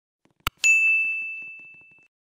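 A single click, then a bright bell ding that rings out and fades over about a second and a half: the click and notification-bell sound effect of an animated subscribe banner as its bell icon is tapped.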